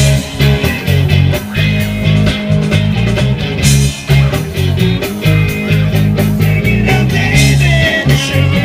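Live rock-and-roll band playing through outdoor PA speakers, electric guitar and drums driving a steady beat.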